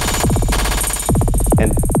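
A drum beat from the iMPC Pro app played through its tempo-synced Ekko delay, set to 1/32-note echoes that repeat rapidly and ring out. Two falling sweeps about a second apart sound over a deep bass.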